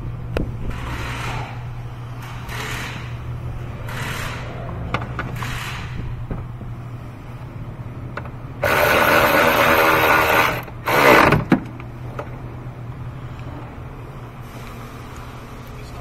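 Milwaukee cordless ratchet running a battery hold-down bolt down: one run of about two seconds, then a short second burst as the bolt snugs up. Before it there are a few soft rustles.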